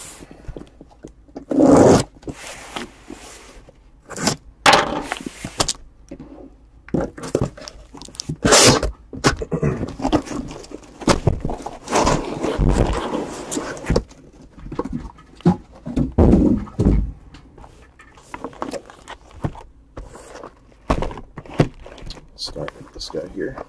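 A taped cardboard shipping case being handled and opened by hand: irregular scrapes, rustles and thumps of cardboard, with louder scraping about a third and halfway through.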